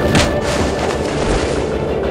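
Dramatic fight sound effects: a sharp boom shortly after the start, then a continuous low rumble, with faint music underneath.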